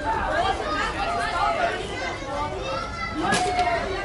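Several young players' voices shouting and calling to each other at once during a youth football match, with a sharp knock about three seconds in.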